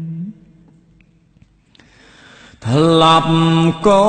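Khmer Buddhist smot chanting by a solo male monk's voice. A held note ends just after the start, followed by a quiet pause of about two seconds, and then a new phrase begins with a rising slide into a long held note.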